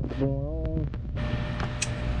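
Camera being handled and repositioned: a couple of sharp clicks, then a rubbing rustle, over a steady low hum.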